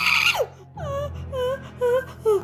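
A cartoon character's voice wailing and falling in pitch, then three short whimpering cries without words.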